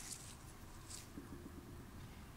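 Quiet background hiss and low rumble, with a few faint soft rustles as a hand moves among the leaves of a potted chili pepper plant.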